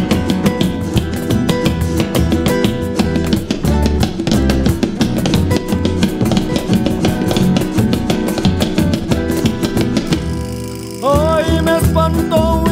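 A band playing an instrumental passage, with drum kit and guitar keeping a busy, even rhythm. About a second before the end, the music drops away briefly and a voice comes in singing a long, wavering note.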